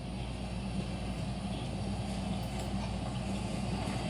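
A steady low hum with a faint even hiss above it; no chime strikes are heard.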